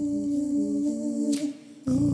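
Music: a steady hummed vocal drone with a short stepping melody repeating beneath it. A brief hiss sounds about two-thirds of the way in, then the sound drops out for a moment just before the end and comes back.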